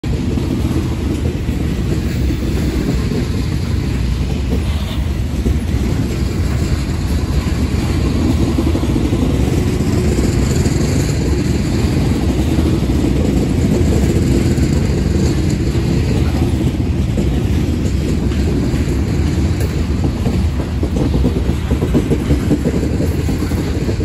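Loaded coal hopper cars rolling past close by: a steady, low rumble of steel wheels on the rails.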